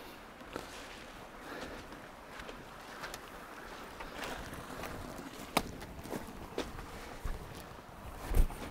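Footsteps on grass and leaf litter in woodland: soft, uneven steps with a few sharper snaps, over a faint steady rush of a small stream.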